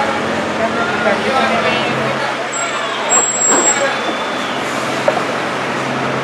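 A Carabineros police van's engine running steadily in the street, under a background of voices, with a brief high whistle-like tone about three seconds in.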